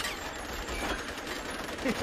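Machine gun firing continuously, heard from a TV clip, with a man's laughter starting again near the end.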